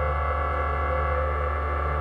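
Ambient electronic music: a sustained synthesizer drone, with a deep bass tone held steadily under several higher steady tones.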